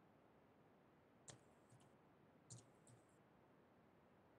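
Faint computer keyboard keystrokes over near silence: a few light clicks in two short groups, one about a second in and another around two and a half seconds in.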